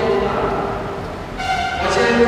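Speech: a man preaching into a microphone, in a language the recogniser did not write down, with a short pause in the middle.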